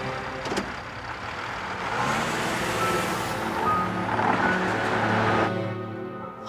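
A car driving along a street, its engine and road noise swelling to a peak and then cutting off suddenly near the end.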